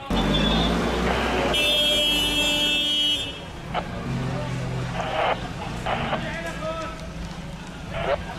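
A crowd shouting while a vehicle horn blares steadily for about two seconds, then quieter voices.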